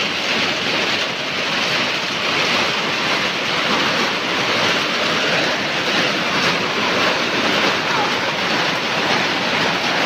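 Heavy rain pouring down onto a concrete yard and vegetation, a dense steady hiss.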